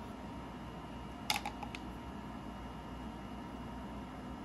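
A quick cluster of three or four light clicks as a wooden stir stick knocks against a plastic mixing cup while thick eco-resin mix is scraped out into a silicone mold, over a steady low hum.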